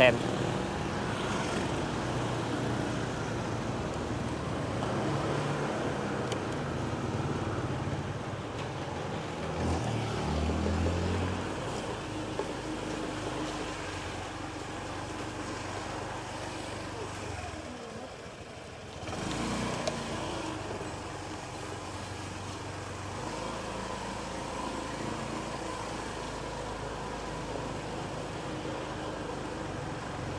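Street and market ambience dominated by motorbike engines running and passing, with people's voices in the background. One engine sounds louder about ten seconds in.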